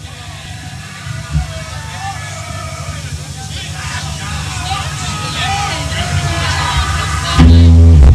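Voices from the crowd over a low steady drone that slowly swells, then a black metal band comes in loud at full volume about seven seconds in.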